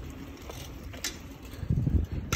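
Wind rush on the microphone and tyre rumble from a bicycle rolling on asphalt, with a couple of light clicks. The rumble swells near the end.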